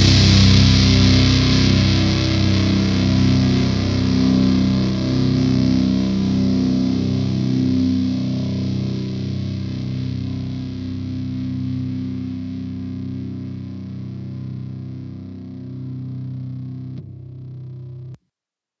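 Distorted electric guitar in a stoner/doom metal band holding a final chord and letting it ring out, fading slowly as the song ends. About a second before the end its bright top drops away, and the sound then stops abruptly.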